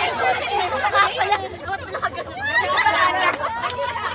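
Overlapping chatter of a group of people talking over one another, with no single voice clear enough to make out.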